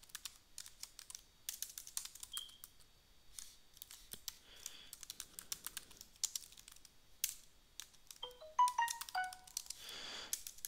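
Computer keyboard typing: quick, irregular key clicks as a line of Java code is entered. Near the end, a brief run of short electronic tones at stepping pitches.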